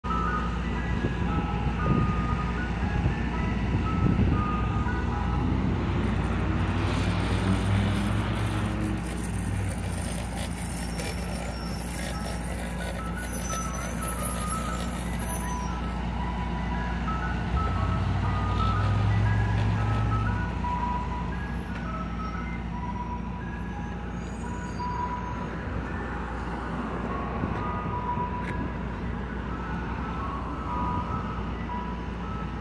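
Mister Softee ice cream truck playing its chime jingle, a repeating tune of short bright notes, over the steady hum of the truck's engine. The engine swells twice as the truck moves off.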